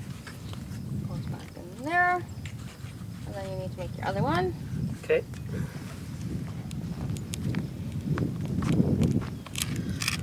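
A few brief wordless vocal sounds with rising pitch, about two and four seconds in, over a low rumble of wind on the microphone and small scattered clicks.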